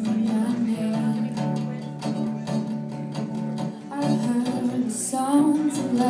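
Acoustic guitar strummed in a steady pattern, with a woman singing over it; her voice comes in more clearly near the end.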